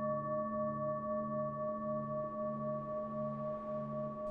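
Sustained meditation drone on the note A: steady held tones with a low hum that swells and fades about one and a half times a second.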